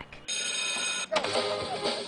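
An electric bell rings steadily for under a second and cuts off suddenly, followed by a noisy din with faint voices.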